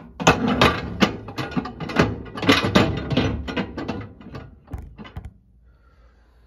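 Glass microwave turntable plate clattering against its roller ring and the oven floor as it is put back in: a dense run of clinks and rattles that stops a little after five seconds in.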